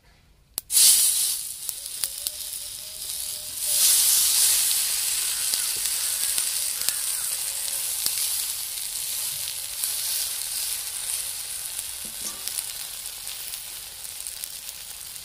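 Gram-flour-coated taro leaf rolls sizzling as they are laid into hot mustard oil in a kadhai. The sizzle starts suddenly just under a second in, swells about four seconds in, then holds as a steady frying hiss.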